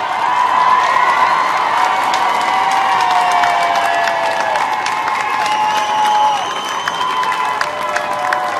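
Crowd cheering and applauding, with long drawn-out shouts over a steady haze of clapping and many sharp clicks.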